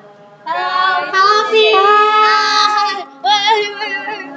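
High girls' voices singing loudly, with long held notes, starting about half a second in and breaking off briefly near the end.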